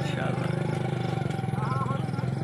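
Engine of a motorcycle loader rickshaw idling steadily, with a faint voice briefly near the end.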